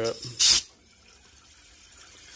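A short, sharp hiss of compressed air about half a second in as an air chuck is pressed onto the aerosol can's valve, followed by a faint bubbling as the air is forced into the liquid inside the WD-40 can.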